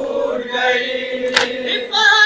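A male voice chants a noha, a Muharram lament, into a microphone, holding one long note. About three-quarters of the way through comes a single sharp slap, a hand striking the chest in matam.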